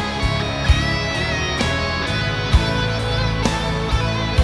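Rock music in an instrumental stretch led by electric guitar over bass and drums, with a sharp drum hit roughly once a second.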